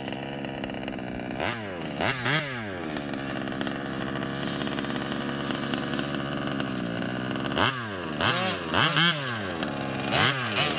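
Small two-stroke petrol engine of a 1/5-scale RC buggy running with a steady buzz, blipped in quick rising-and-falling revs about a second and a half in and again several times from about eight seconds on.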